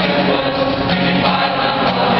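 Mixed choir of men and women singing in parts with long held notes, accompanied by a strummed acoustic guitar.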